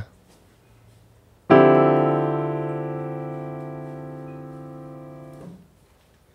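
Piano playing a single D minor 11 chord, struck once about a second and a half in. It rings and fades steadily, then stops abruptly when the keys are released near the end.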